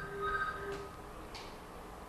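Electronic telephone ringing: short pulses of steady beeping tones at several pitches at once in the first second, fading to faint room noise.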